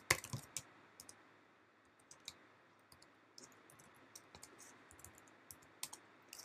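Computer keyboard typing: faint key clicks, a quick run of them at the start, then sparse scattered keystrokes with one louder click near the end.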